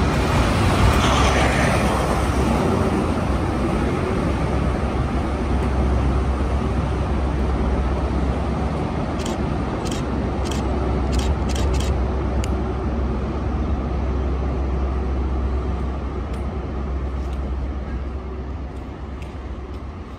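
Departing High Speed Train: coaches rumble past close by at first, then the rear Class 43 diesel power car runs with a steady low drone as it pulls away. A few sharp ticks come around ten seconds in, and the engine sound fades near the end.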